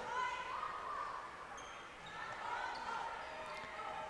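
Gymnasium ambience during a stoppage in play: faint, distant voices of players and spectators carrying in the hall.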